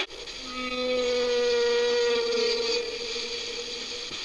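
An abrupt cut from noisy crowd sound into a long steady held tone, joined for its first couple of seconds by a fainter lower tone.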